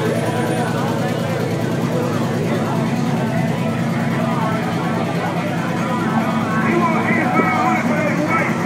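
A cammed GMC short-bed pickup's engine idling steadily with a choppy, cammed-out lope, with people talking over it.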